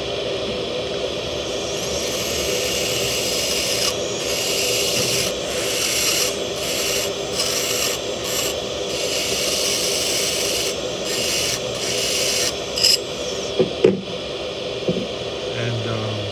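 Dental lab handpiece spinning a carbide bur, grinding the underside of a cast metal implant framework: a steady motor whine under a grinding hiss that breaks off briefly several times in the middle.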